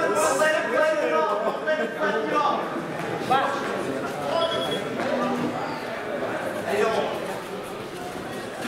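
Several people talking and calling out in a large sports hall, the voices overlapping and indistinct; they are loudest in the first few seconds.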